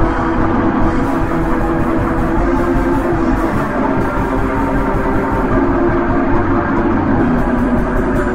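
Raw black metal song from a lo-fi demo recording: a dense, unbroken wall of distorted guitar and drums with steady held chords.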